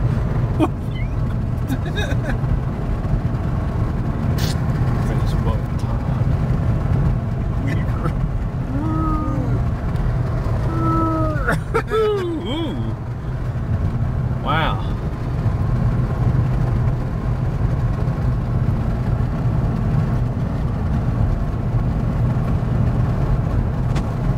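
Steady road and engine rumble heard from inside a moving car's cabin. Brief voice sounds come in between about eight and thirteen seconds in.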